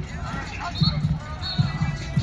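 Outdoor football practice din: shouting voices and music playing over loudspeakers, with repeated low thuds.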